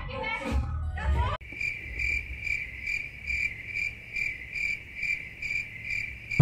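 A group's voices, cut off abruptly about a second and a half in, then a cricket chirping steadily, a single high tone about two and a half chirps a second.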